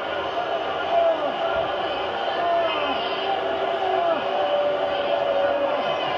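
Television wrestling commentary: a man's voice talking excitedly over steady arena crowd noise, heard through a TV's speaker.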